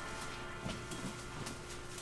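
Quiet room with a few faint, soft taps of tossed tea bags landing on a wooden table and in a ceramic mug.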